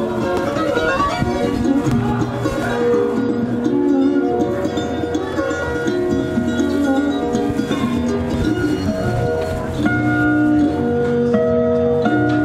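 Instrumental music played through a Holoplot MD-96 matrix-array loudspeaker, whose beams send each instrument to its own spot. Held notes with a cello underneath and plucked-string lines over it, the mix shifting as the listening position moves toward the guitar beam near the end.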